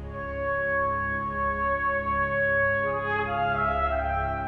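Background music for a trailer: long held notes over a steady low drone, moving to new notes about three seconds in.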